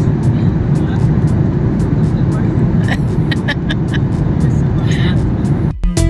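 Steady low rumble of a jet airliner cabin in cruise, with faint passenger voices in the background. Music cuts in just before the end.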